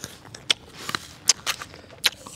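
Someone biting and chewing a crisp, juicy raw apple: a series of sharp crunches, about two or three a second.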